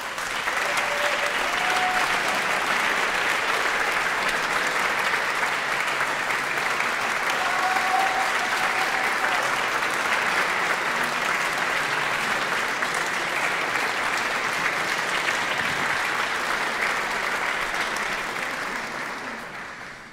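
A large audience applauding steadily, dying away near the end.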